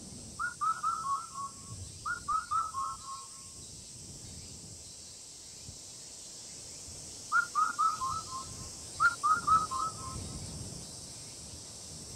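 A bird singing short phrases of four or five quick whistled notes that fall in pitch, four phrases in two pairs with a pause between the pairs, over a steady high insect drone.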